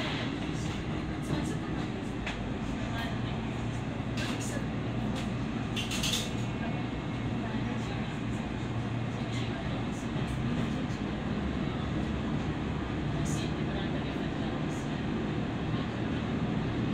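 Diesel railcar running along the track, heard from inside the car: a steady engine and wheel rumble with a few sharp clicks from the wheels over the rails, the loudest about six seconds in.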